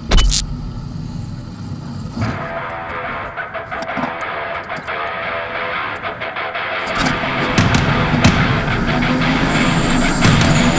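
A V8 stock-car race engine heard from inside the cockpit, mixed with music. The engine's low rumble gets louder about seven seconds in. A short whoosh sounds right at the start.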